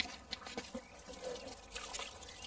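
Liquid sloshing and trickling in a plastic jerrican as it is tipped to pour, faint, with a brief knock at the very start.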